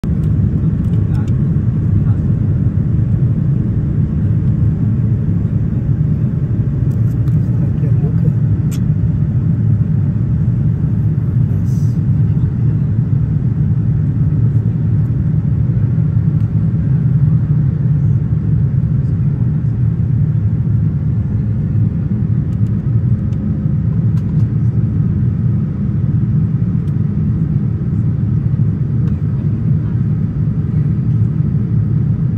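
Steady, loud low rumble of an airliner in flight, heard inside the cabin: engine and airflow noise that holds even throughout.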